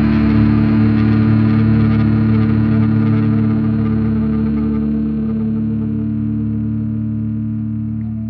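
Distorted electric guitars and bass holding one last chord through effects, left to ring out with no new notes and slowly fading as the song ends.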